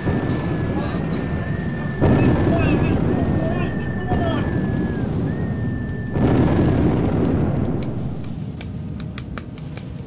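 Three explosion booms with long rumbling tails, one at the start, one about two seconds in and one about six seconds in, over a repeating high whistle that stops with the third blast. A run of sharp clicks follows near the end.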